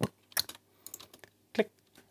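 Computer keyboard keys pressed in a short run of separate clicks, including the spacebar. The loudest click comes at the start, two more about half a second in, and another about a second and a half in.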